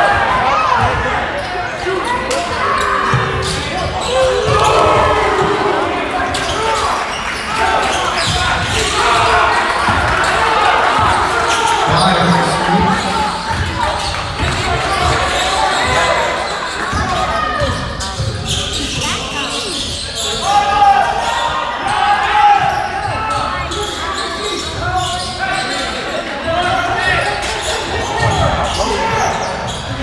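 A basketball bouncing on a hardwood gym floor during a game, under the steady chatter of spectators' voices echoing in a large gymnasium.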